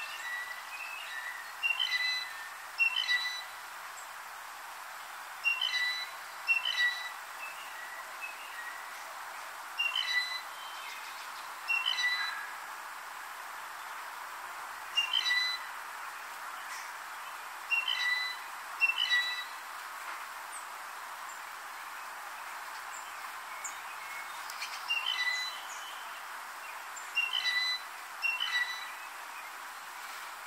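Blue jay giving its squeaky gate, or rusty pump-handle, call: short creaky notes, mostly in pairs, repeated every few seconds over a steady background hiss.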